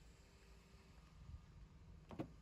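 Near silence: faint low room tone.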